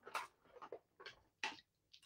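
Craft supplies being handled and picked up on a desk: four faint, short taps and rustles spread across two seconds.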